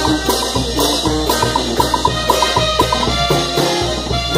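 A live brass band playing a dance tune: brass melody over a steady beat of bass drum, cymbals and congas, with hand percussion keeping time.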